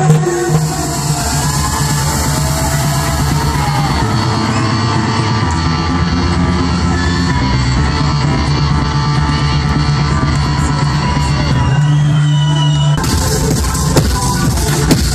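Loud live electronic dance music over a concert sound system, with a steady pulsing bass line and synth parts above it; about thirteen seconds in, a bright hissy high layer cuts back into the mix.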